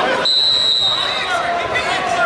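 A single whistle blast: a steady high tone just under a second long, over shouting voices.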